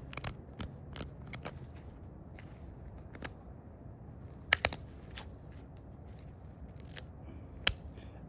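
Antler pressure flaker working the edge of a rhyolite point: scattered small clicks and snaps of the antler tip on the stone, the loudest a quick pair of sharp snaps about four and a half seconds in.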